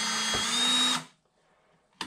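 Power drill driving a 1½-inch Irwin spade bit down into clamped wooden boards: the motor whines steadily, rising a little in pitch, then stops about a second in.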